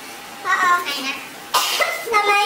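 A young woman's short vocal outbursts while feeling an unseen object: a brief pitched cry about half a second in, then a sudden harsh cough-like burst about one and a half seconds in.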